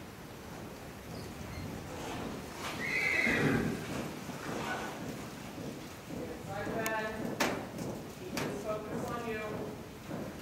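A horse whinnies, once from about 6.5 to 7.5 seconds and again from about 8.5 to 9.8 seconds, over hoofbeats on the sandy arena footing.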